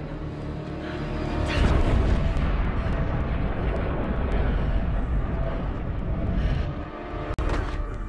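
Tense film score under a deep rumbling blast sound effect that swells about a second and a half in. Near the end the sound cuts out for an instant and a sharp impact hits.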